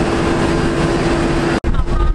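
Steady airport-apron machine hum with one constant mid-pitched tone, from around a parked twin-turboprop airliner and its ground equipment. It breaks off abruptly near the end.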